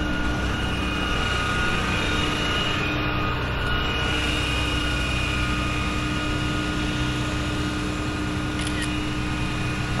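Rollback tow truck's engine idling: a steady drone with a constant hum that doesn't change pitch.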